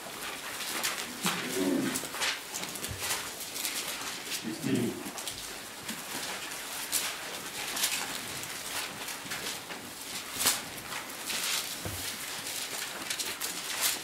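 Bible pages rustling and flicking as they are leafed through, a run of short papery crackles, with two brief low vocal murmurs early on.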